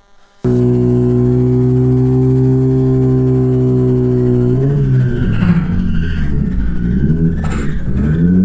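Sportbike engine running at a steady pitch, cutting in suddenly just after the start. About halfway through it turns rougher, its pitch wavering up and down.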